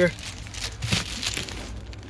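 Irregular rustling and crinkling handling noise with a few light ticks, as a hand reaches in over the folded third-row seats.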